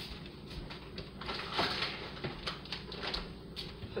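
Faint scattered knocks, clicks and rustles of someone moving about a kitchen and handling things, with no one speaking.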